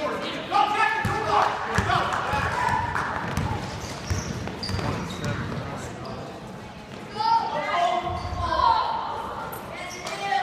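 A basketball game in an echoing gym: a ball bouncing on the hardwood floor, with players and spectators shouting in bursts, loudest about a second in and again around seven to nine seconds in.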